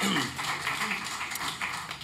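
Soft, indistinct men's voices and murmurs, quieter than the talk around them, with no clear words.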